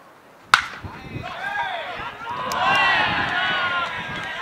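A single sharp crack about half a second in: a wooden bat meeting a pitched baseball. Overlapping shouting voices follow, loudest about three seconds in.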